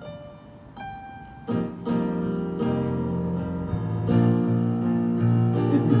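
Opening music from a marching band's front ensemble: a few single keyboard notes, then sustained chords entering about a second and a half in and growing louder around four seconds.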